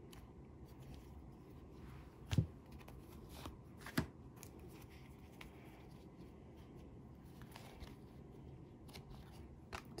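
Tarot cards being handled: faint card rustle with a few soft clicks and taps as cards are drawn from a fanned deck and laid down. The loudest tap comes about two and a half seconds in and another at four seconds.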